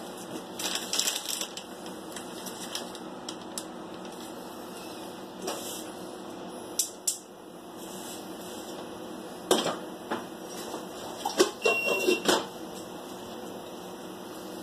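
Scattered clicks, taps and knocks of kitchen things being handled, irregular and sparse, over a steady low hum.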